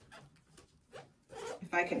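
Faint, brief rustling and sliding of tarot cards being leafed through by hand, a few short scrapes in the first second. A woman starts speaking in the second half.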